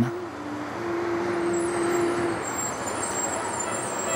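Steady vehicle noise, like road traffic, with one held tone for about a second and a half near the start.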